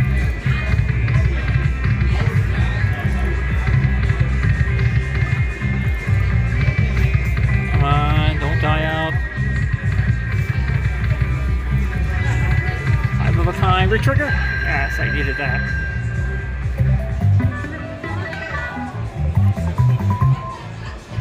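Ainsworth Ming Warrior slot machine playing its electronic free-games music as the reels spin, over casino floor noise. A run of quick rising tones comes about eight seconds in, and a held chime comes about fourteen seconds in.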